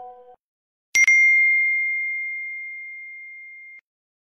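A phone message-notification ding: one bright chime about a second in, its single clear tone fading away over nearly three seconds before cutting off abruptly. In the first moment, the fading tail of an earlier chord-like tone.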